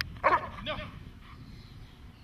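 A dog giving two short barks up at a handler who holds its toy, a loud one about a quarter second in and a weaker one just after.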